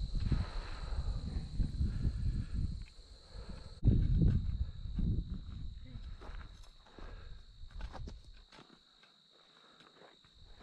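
Wind buffeting the camera microphone in gusts, strongest about four seconds in and dying away near the end, over a steady high whine.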